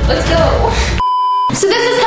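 An edited-in censor bleep: one steady high beep about half a second long, near the middle, with all other sound cut out while it plays, between stretches of talking.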